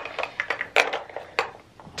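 Plastic makeup containers clicking and knocking against one another as they are handled and packed into a small makeup pouch: a run of irregular sharp clicks and light knocks.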